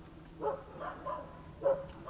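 A dog barking three times, faint and short, with short gaps between the barks.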